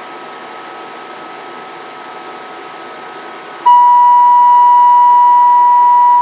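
Steady cooling-fan noise with a faint whine, then about two-thirds of the way in a loud, steady audio test tone near 1 kHz, with fainter overtones, switches on suddenly and holds. It is the tone modulating the CB radio's carrier into the amplifier.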